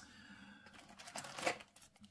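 Yu-Gi-Oh trading cards and a foil booster pack being handled: faint rustling and crinkling with small clicks, a little louder about a second in.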